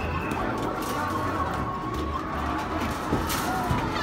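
Arcade room din: game music and electronic sound effects with a steady low beat and background voices.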